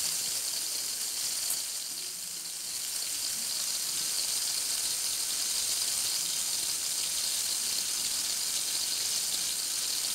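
Tomato slices sizzling steadily in hot oil in a frying pan, a continuous even hiss that dips slightly about two seconds in.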